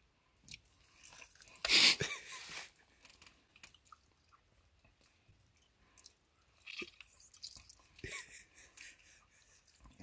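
A lime half squeezed by hand over an opened coconut: a few short, wet squeezing noises, the loudest about two seconds in, with fainter ones near seven and eight seconds.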